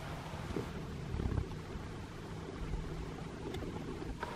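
Wind buffeting the camera microphone outdoors: a steady low rumble with no clear pitch, with a slightly stronger gust about a second in.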